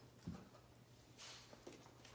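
Puppies play-fighting on a rug: faint scuffling of paws and bodies, with a soft thump about a quarter second in and a brief rustle past the middle.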